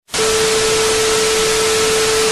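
Television static sound effect: a loud, even hiss of white noise with a single steady beep tone held underneath. It starts just after a split-second dropout.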